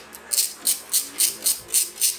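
Sharp metallic clicks from a hand tool working on a small petrol generator engine, coming in an even run of about four a second.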